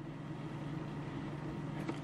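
Steady low background hum with no distinct handling sounds.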